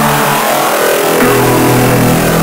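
Hard electronic dance music: a loud, dense noise wash over held synth tones, with a deeper bass note coming in a little past halfway.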